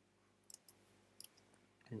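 Faint, scattered clicks of a computer keyboard being typed on: a few quick keystrokes in two small clusters over near silence.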